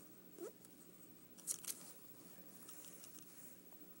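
Pencil scratching on a paper pad while drawing maze lines, faint, with two sharp quick strokes about a second and a half in. A brief rising squeak about half a second in.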